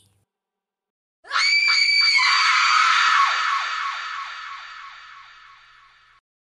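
A high-pitched scream sound effect that starts suddenly about a second in, then fades away slowly in a long echo over the next four seconds.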